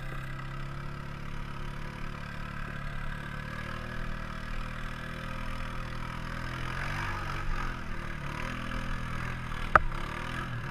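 ATV engine running steadily at a low, idle-like pitch while one quad tows another along a dirt trail, with a single sharp knock shortly before the end.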